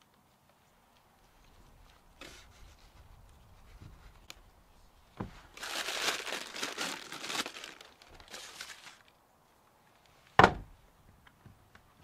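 Paper crinkling as hands rummage through a paper-lined plastic tub of fondant, loudest for a few seconds in the middle. Near the end comes a single sharp thump, the loudest sound here.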